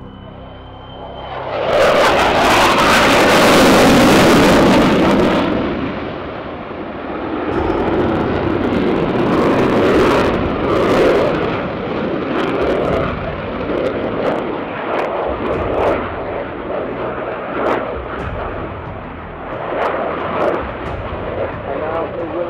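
Jet engine noise from a Spanish Air Force F/A-18 Hornet's twin afterburning turbofans during a flying display. The noise swells sharply about two seconds in and is loudest for a few seconds as the jet passes, then stays loud, rising and falling as it manoeuvres.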